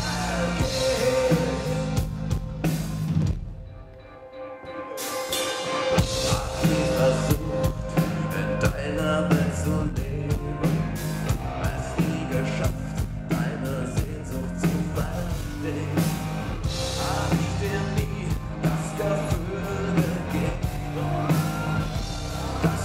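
A live rock band playing with sung vocals, guitar, keyboards and a drum kit. About three and a half seconds in the band drops out briefly, leaving a held note, and the full band comes back in about six seconds in.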